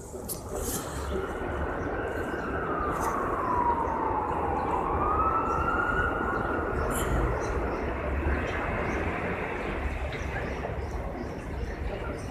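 Emergency-vehicle siren on a slow wail: its pitch falls steadily for several seconds, then rises again. Steady city street noise and rumble run beneath it.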